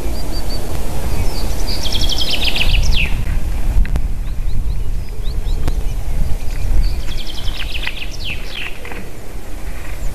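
A common chaffinch sings twice, each song a run of quick descending trills ending in a short downward flourish. Under it runs a steady low rumble, which is the loudest sound.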